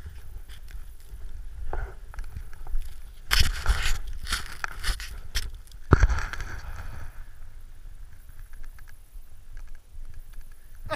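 Snow and jacket fabric scraping and rustling against a chest-mounted GoPro as a snowboarder shifts through deep powder, over a steady low rumble of wind on the microphone. There is a loud burst of scraping about three and a half seconds in and a sharp knock against the camera at about six seconds.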